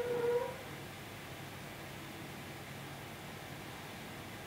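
Steady low hiss of room tone, with one brief pitched tone lasting about half a second at the very start.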